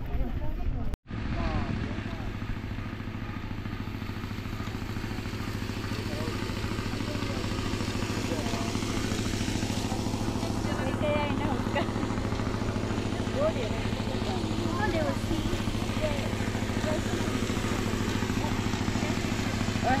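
Steady low hum of an idling engine, with faint distant voices over it. The sound drops out for an instant about a second in.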